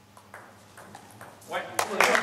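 A table tennis rally: a quick series of sharp clicks as the celluloid ball strikes the table and the bats. It ends near the end with a loud shout and a last click.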